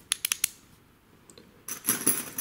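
Metal handling sounds from a padlock: a few sharp clicks in the first half second, then a ringing metallic clinking jingle near the end.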